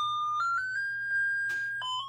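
Battery-operated novelty Santa doorbell playing its electronic melody: a single thin, bright tone that steps up through a few quick notes, holds a higher note, then drops back down.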